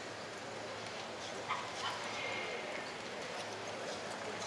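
Steady background noise of an indoor arena, broken about a second and a half in by a short sharp yelp-like call, with a brief high thin tone just after two seconds.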